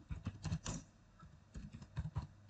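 Typing on a computer keyboard: a quick run of key clicks, a pause of about half a second, then more keystrokes near the end.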